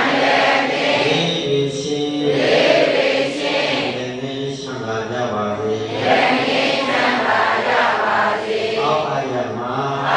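A Burmese Buddhist monk chanting in a steady recitation, his voice held on long, drawn-out notes.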